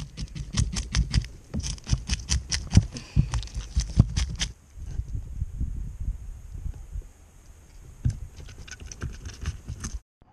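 Metal spoon scraping the scales off a mullet on a plastic cutting board: quick rasping strokes, about five a second, that thin out and grow quieter after about four and a half seconds.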